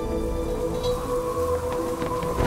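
Film-score music holding sustained tones over a rush of gusting wind with a low rumble.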